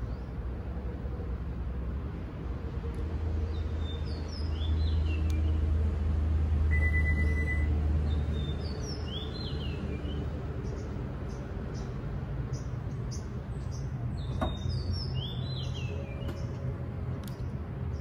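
Powered tailgate of a Toyota Corolla Cross closing from the key fob: a low motor hum, a single beep about seven seconds in, and a sharp click about fourteen seconds in as it latches shut. Birds chirp in short bursts three times.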